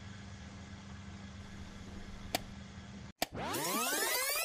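Steady low hum and hiss like VHS playback, with a single click a little past two seconds. Just after three seconds the sound cuts out, clicks, and a tape-rewind sound effect starts: a loud whirring cluster of pitches sweeping upward.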